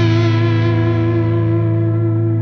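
A distorted electric guitar chord held and ringing out at the close of a rock ballad, its bright upper edge slowly dying away as it sustains.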